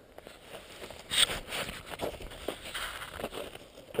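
Footsteps crunching on snow, with uneven rustling and crunching and one louder crunch about a second in.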